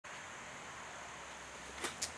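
Faint steady room tone: a low hum under a soft hiss, with one brief soft click near the end.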